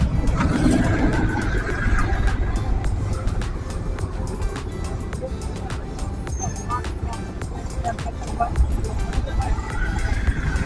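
Vehicle and road noise while riding through city traffic: a steady low engine and road rumble with scattered small clicks.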